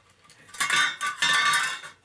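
Hand-held can opener's cutting wheel cranked along the rim of a thin metal tin lid, giving two loud stretches of squeaking, rasping metal, about half a second in and again just after the one-second mark.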